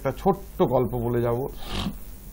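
A man speaking in Bengali.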